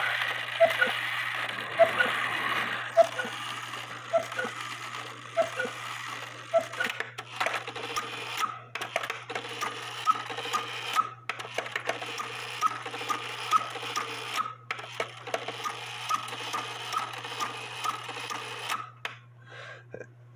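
Antique count-wheel cuckoo quail clock movement running. A train of brass gears whirs with a soft click about every second for the first six or seven seconds, then the escapement ticks about twice a second, with a few louder knocks in between.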